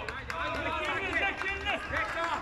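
Several men shouting and calling out over one another during a five-a-side football game, with a few sharp knocks among the voices.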